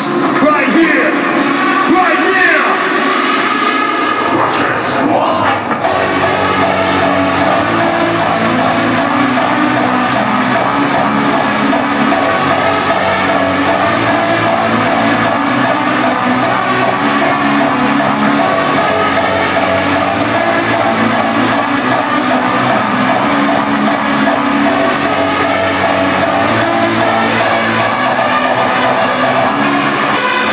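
Loud hardstyle DJ set over a large hall's sound system. In the opening seconds sweeping tones rise and fall; from about six seconds in, a held synth melody of steady chords takes over.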